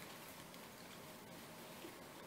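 Near silence: room tone, with faint rustles of silk flowers and ribbon being turned over by hand.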